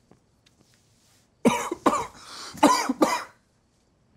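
A man coughing on a drag of cigarette smoke: a short fit of about four hacking coughs starting about a second and a half in, the sign of an inexperienced smoker choking on the smoke.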